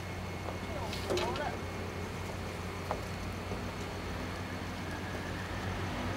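A steady low hum with faint, distant voices of people chatting, one snatch of talk about a second in.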